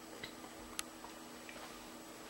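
Quiet room with a few faint, sharp clicks, the clearest a little under a second in.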